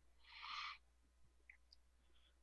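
Near silence, broken once about half a second in by a faint, short hiss.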